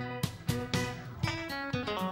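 Country line-dance tune played on guitar, plucked and strummed, with new notes about four times a second.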